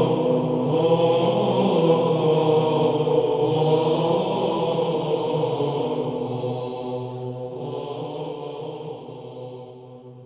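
Orthodox church chant: voices singing a slow line over a steady held low note, fading out over the last few seconds.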